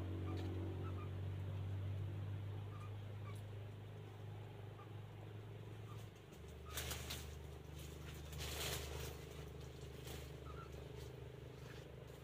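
Dry bamboo leaves and litter rustling and crackling as a person moves through and handles the thicket, starting about halfway through. A steady low hum sits beneath it and drops in pitch about halfway, with faint short bird chirps scattered throughout.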